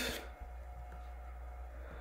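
Quiet room tone: a steady low hum and faint hiss, with no distinct event.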